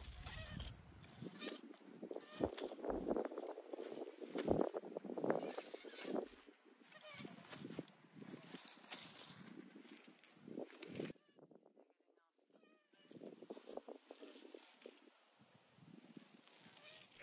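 Garden Weasel nut gatherer rolling over a lawn: its wire cage rustles through the grass and green-husked walnuts knock softly as they are pushed in between the wires. The sound is quiet and irregular, and briefly dies away about eleven seconds in.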